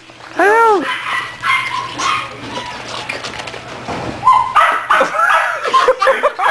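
Puppies play-fighting: one high yelp that rises and falls about half a second in, then a quick run of yips and yaps in the last two seconds.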